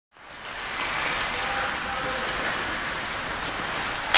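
Steady hiss of indoor ice rink ambience, skates on the ice and the rink's ventilation, fading in at the start, with faint distant voices and a few light clicks.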